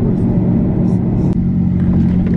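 Steady hum of a car being driven, heard from inside the cabin: engine and road noise at a constant level.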